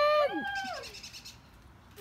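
Cheering voices in the first second: a drawn-out "yeah!" and a second, higher call overlapping it, each rising then falling in pitch.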